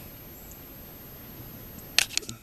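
Steady faint background hiss, the room tone of the recording, with a sharp click right at the end.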